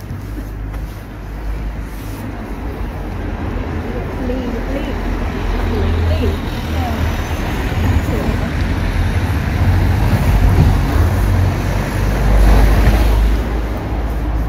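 Street traffic noise: a road vehicle approaching and passing along the street, the rumble and tyre noise building steadily to its loudest about twelve seconds in, then easing off.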